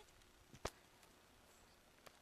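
Near silence: faint background hiss, broken by one sharp click a little over half a second in.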